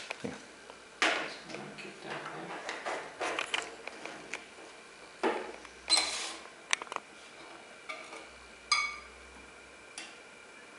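Metal forceps clinking and scraping against a plastic tube and a glass Petri dish: a scattered series of sharp taps and rustles, with one clear, ringing clink near the end.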